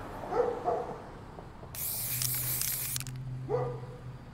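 Two short dog barks, then an aerosol spray-paint can hissing for about a second and a half, then another bark near the end.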